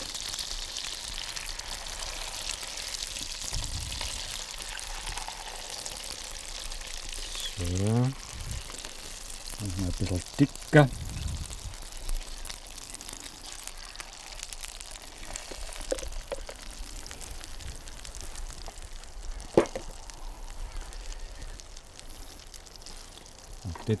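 Thick Kaiserschmarrn batter poured into pans of hot butter, fizzing and sizzling as it starts to fry; the sizzle is strongest over the first several seconds and then dies down. A few sharp knocks of utensils on the pans come through.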